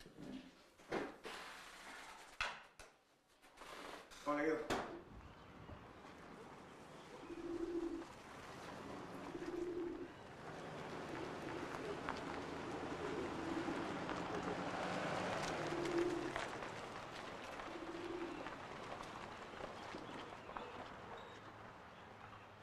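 Doves or pigeons cooing: a low call repeated about every two seconds, over a steady outdoor hiss. A few knocks and clatter come in the first five seconds.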